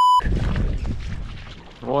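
A loud, steady censor bleep of about 1 kHz stops sharply just after the start. It gives way to wind and water noise from wading in shallow water, which fades until a man's voice begins at the very end.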